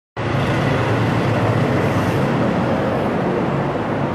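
Loud, steady noise with a low, even hum underneath, with no break or change.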